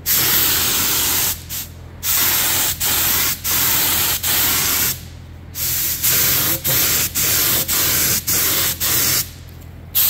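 Central Pneumatic gravity-feed paint spray gun hissing in repeated trigger pulls as it sprays paint. The bursts run from about one to three seconds with short breaks between them and stop shortly before the end, over a steady low hum.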